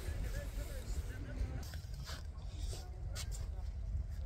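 Wind rumbling on the microphone, with faint voices of people talking in the background during the first second or so. There are a few sharp clicks about two and three seconds in.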